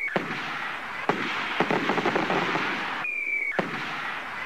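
Aerial fireworks going off: a steady crackle punctuated by several sharp bangs. About three seconds in, a short whistle falls slightly in pitch and ends in another bang.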